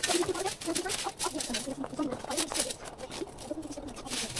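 Dry, dead plant leaves rustling and crackling as they are pulled and handled, with short, frequent clucking bird calls over it.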